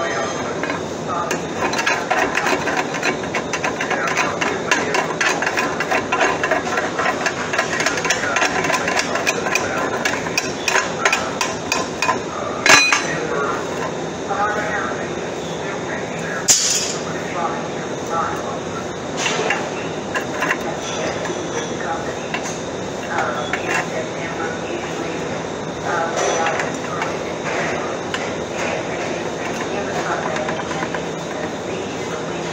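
Rapid hammering and clanking of metal on steel, densest in roughly the first twelve seconds, with one loud clang about 13 seconds in and a brief hiss a few seconds later, then scattered knocks.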